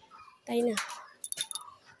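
A woman's voice says a couple of words, then a brief metallic jingle: a quick run of sharp, ringing clicks of small metal pieces a little past the middle.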